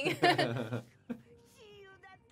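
An old woman cartoon character's exaggerated, wavering wailing sob, loud in the first second, followed by a man and a woman laughing.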